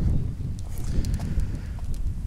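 Wind buffeting the microphone: an uneven low rumble, with a few faint clicks about a second in.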